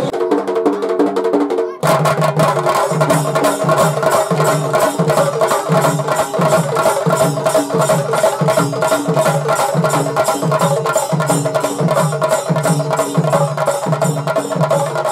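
Traditional temple drumming: barrel drums beating a fast, steady rhythm of sharp strokes over a held tone. It cuts in abruptly about two seconds in, replacing a different, more melodic passage of music.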